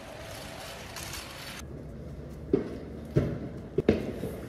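Handling noise and thumps from carrying a white metal clothing rack and bags through a stairwell: a steady hiss for about the first second and a half, then three sharp thumps in the second half, a little over half a second apart.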